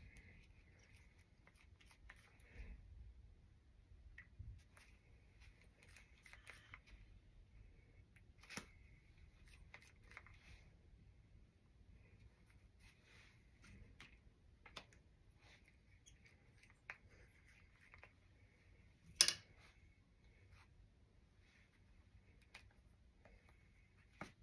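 Quiet, scattered light taps and rustles of hands handling a small inked pepper half and pressing it onto fabric, with one sharper click about three quarters of the way through.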